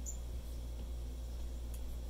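Steady low electrical hum of the recording, with a brief high squeak just after the start and a few faint ticks of the Apple Pencil tip on the iPad's glass screen near the end.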